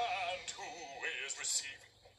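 A voice singing with a wavering pitch as the show's music fades out, played through a television speaker and picked up in the room. The sound drops away near the end.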